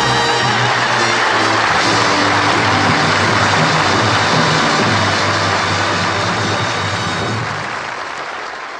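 Studio audience applauding over the orchestra's held final chord at the end of the song, beginning to fade out near the end.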